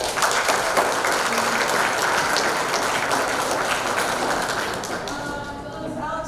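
Audience applauding, a dense patter of hand claps that eases off slightly near the end.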